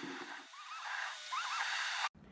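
Video fast-rewind effect: the footage's own audio played back at high speed, heard as short, high-pitched, garbled chirps over a steady hiss.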